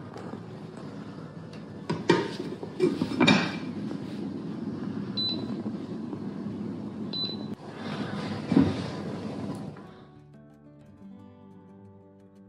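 A glass pan lid set onto a frying pan with a few clinks and knocks, then two short high beeps from the induction hob's touch controls, and one more knock later on, over a steady hiss. The live sound stops about ten seconds in.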